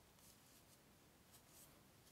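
Near silence, with faint scratching of wooden knitting needles and cotton yarn as stitches are worked, in short soft patches.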